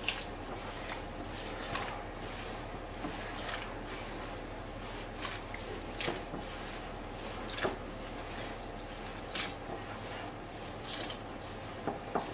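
Soft poğaça dough being kneaded by a gloved hand in a glass bowl: quiet squishing with irregular soft knocks every second or two.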